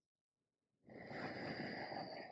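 A woman's audible exhale, a breathy rush of about a second and a half that starts nearly a second in, breathed out as she lowers her arms during a yoga flow.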